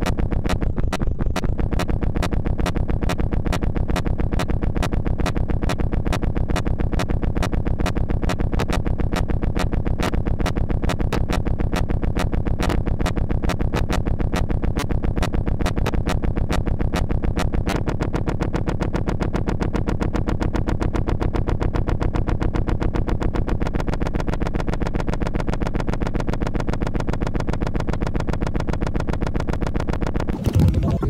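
Electronic noise music: a dense, fast-pulsing buzz over a low drone. Its low end shifts about 18 seconds in and drops lower about 24 seconds in.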